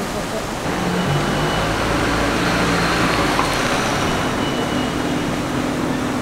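A vehicle engine running steadily, coming in about a second in, with people's voices in the background.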